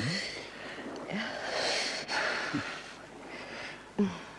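A man puffing on a pipe to get it lit: short breathy puffs and draws over a steady background hiss.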